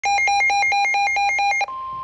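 Midland NOAA weather radio sounding its alert: a loud, rapid pulsing alarm alternating between two pitches, about five cycles a second. About 1.7 seconds in it cuts off and a steady single-pitch tone, the NOAA Weather Radio warning alarm tone, begins, signalling an incoming warning.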